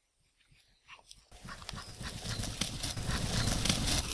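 A Labrador retriever galloping up across grass: rapid footfalls with a rushing noise, starting about a second in and growing louder as the dog comes close.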